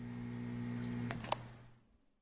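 Logo-animation sound effect: a steady low electrical buzz like a neon sign, fading in and then out, with two short sharp crackles a little after a second in.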